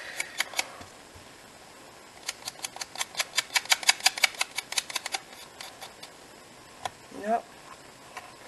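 Adhesive tape runner ticking as it is drawn along the back of a small paper piece: a quick, even run of clicks, about nine a second, lasting about three seconds, after a few scattered clicks at the start.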